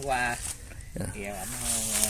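Men's voices talking, with a faint steady high hiss behind them.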